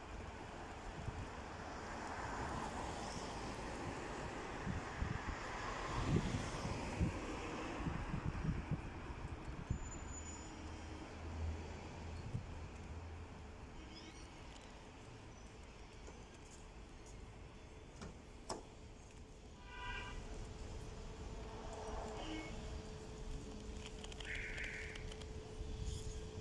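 City street ambience: a steady low rumble of traffic, with some low thumps in the first half and a brief high-pitched sound about twenty seconds in.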